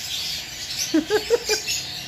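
Continuous high chattering of many small caged birds in an aviary, with a quick run of four short, lower-pitched calls about a second in.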